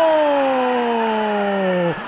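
A football commentator's long drawn-out goal shout: one held vowel, loud, sliding steadily down in pitch for about two and a half seconds before breaking off just before the end.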